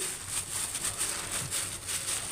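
A plastic bag crinkling and rustling as a bag-covered hand pats and smooths a soft, crumbly soap mixture in a plastic-lined tray. The rustles come as a run of short, irregular strokes.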